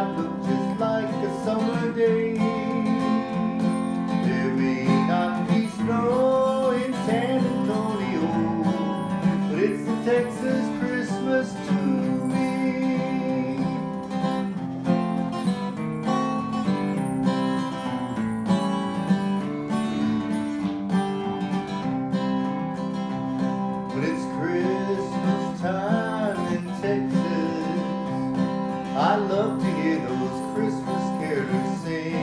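Acoustic guitar strummed and picked steadily, playing a Christmas song.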